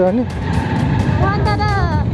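Low, steady rumble of a motorcycle riding along a street, under a voice and background music that come in near the end.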